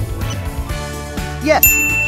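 Background music with a steady beat. About one and a half seconds in, a bright ding chime sound effect rings out and holds, marking the answer reveal.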